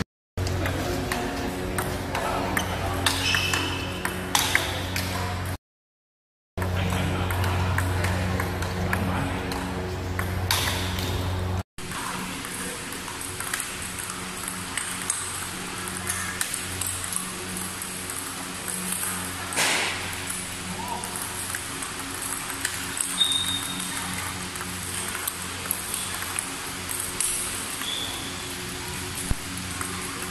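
Background music with a couple of short silent gaps for about the first twelve seconds. After that comes a table tennis rally: a steady run of sharp clicks as the ball bounces on the table and is struck by the bats.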